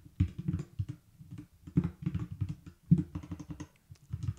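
Typing on a computer keyboard: quick runs of key clicks in a few short bursts with pauses between.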